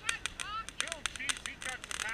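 Ground firework fountain crackling: a rapid, irregular string of sharp pops.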